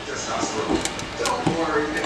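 Faint, indistinct voices with a couple of short clicks about midway through.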